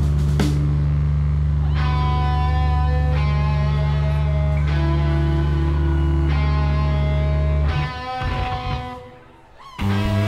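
Live rock band playing distorted electric guitar chords over a loud held bass note, with no drums, the chords changing about every second and a half. Near the end the band stops and the sound falls away almost to quiet for about a second before coming back in.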